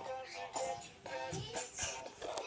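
A song playing, with a sung vocal melody.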